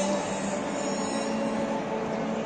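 Steady stadium ambience: a continuous wash of noise with a few held tones running through it.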